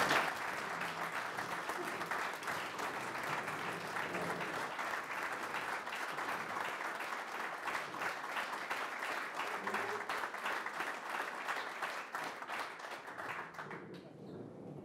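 Audience applauding: many people clapping steadily, dying away near the end.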